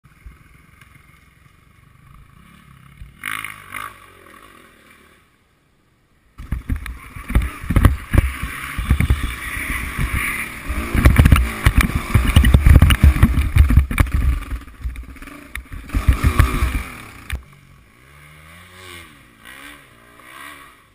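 Off-road motorcycle engine running and revving close by, loud and uneven from about six seconds in until about seventeen seconds, with rough knocks mixed in; fainter at the start and near the end.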